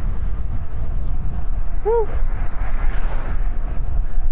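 Steady rumble of wind on the microphone and tyre noise from a bicycle riding along a paved street, with a short "woo" from the rider about two seconds in.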